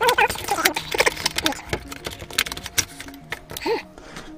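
A small cardboard box being opened by hand: a run of sharp clicks, scrapes and rustles as the flaps are worked open and the inner card sleeve slides out.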